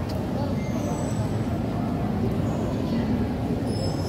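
Steady low rumble of a large hall's ambience, with indistinct murmur from a big standing crowd.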